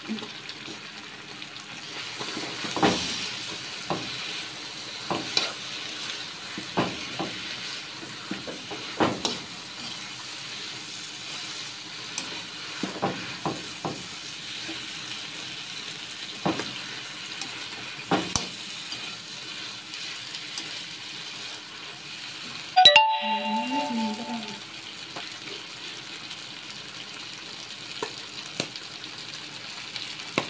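Squid stir-frying in a wok: a steady sizzle, with the scrape and clink of a metal spoon turning the food every second or two. About two-thirds of the way in comes one loud sharp clack, followed by a brief ringing tone.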